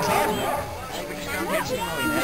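Indistinct voices of people nearby, with a few short, high-pitched calls rising and falling.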